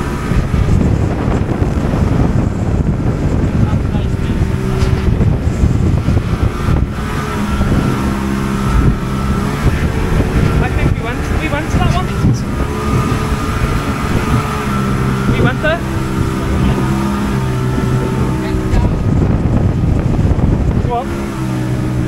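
Motorboat under way at sea: a loud, constant rush of wind and water over an engine drone that fades in and out every few seconds.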